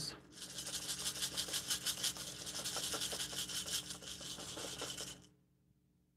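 Brown rice shaken down inside a small fabric bag with a funnel in its opening: a rapid, grainy rustling hiss of the grains shifting, which stops abruptly about five seconds in.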